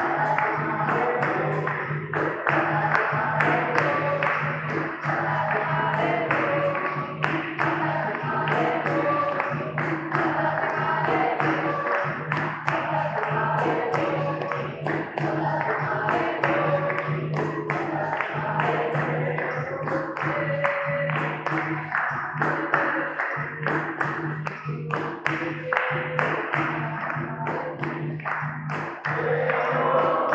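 Capoeira roda music: berimbaus and an atabaque drum played in a steady rhythm, with hand-clapping from the circle and call-and-response singing over it.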